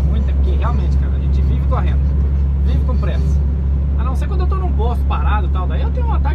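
Steady low drone of a truck's diesel engine and road noise heard inside the cab at highway speed, with a voice speaking in snatches over it.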